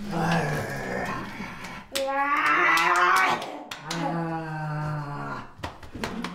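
Wordless vocalising from a non-verbal autistic boy and the adults echoing him: long, wavering voice sounds, a high drawn-out one about two seconds in and a lower, steadier one about four seconds in, with a few light taps.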